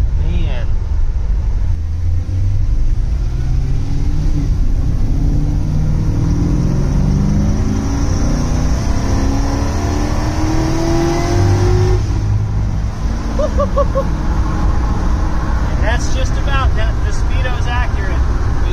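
LS-swapped V8 in a 1954 GMC pickup, heard from inside the cab, accelerating hard: the engine note climbs for about ten seconds, then drops as the throttle is lifted. Voices come in near the end.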